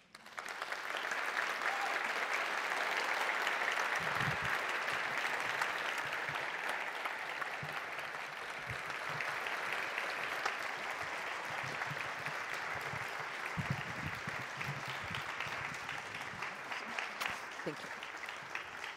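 Audience applauding, starting all at once and easing off slightly over the second half.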